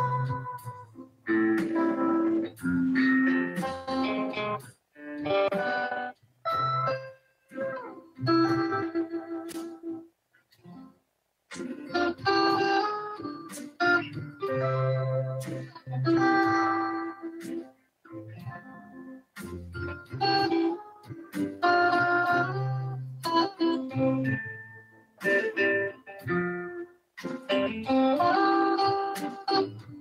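A band playing a slow instrumental, with an electric guitar carrying the melody over a sustained bass. It is heard through a video-call connection, and the sound cuts out briefly many times.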